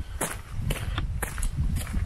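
Footsteps on a forest trail at walking pace, sharp steps about two a second, over a low rumble of movement noise on the handheld camera's microphone.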